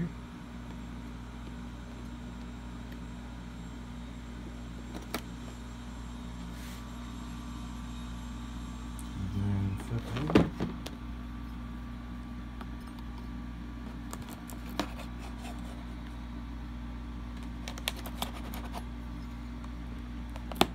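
A knife working at a cardboard-and-plastic toy box to open it: a few scattered clicks and scrapes over a steady low room hum, with a louder knock about ten seconds in and a run of clicks near the end.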